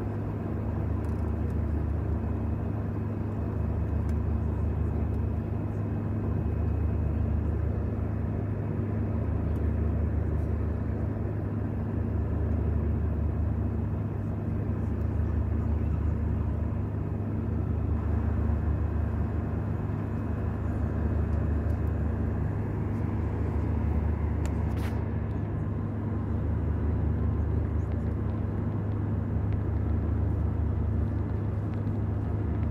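Airbus A320 cabin noise in flight: the steady low rumble of the jet engines and airflow heard inside the cabin, gently swelling and easing every few seconds.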